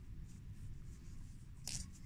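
Faint scratchy rustling of yarn as a crochet hook pushes a leftover yarn tail inside a crocheted amigurumi piece, over a low steady room rumble.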